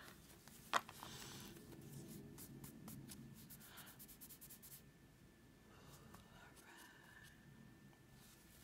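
A deck of oracle cards being shuffled in cloth-gloved hands, faint: one sharp tap under a second in, then a run of quick, soft card flicks and rubbing for about four seconds.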